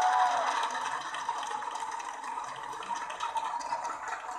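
Steady, hiss-like badminton arena noise, mostly crowd, heard during a rally, with a brief squeak near the start.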